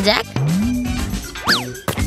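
Cartoon sound effects over background music: a low tone that slides up and holds, then about a second and a half in a quick boing that leaps up in pitch and drops straight back.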